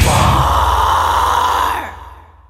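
The end of a heavy metal song: the drums stop and a female vocalist's held scream rings over a sustained low guitar and bass chord, then drops away near the end and fades out.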